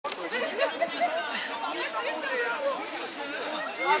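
People's voices chattering, spectators talking among themselves with no words making it into the transcript.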